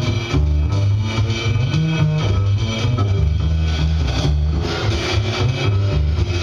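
Live band playing, led by an upright double bass plucking a line of low notes that move in pitch every beat or so, with drums and cymbals keeping time.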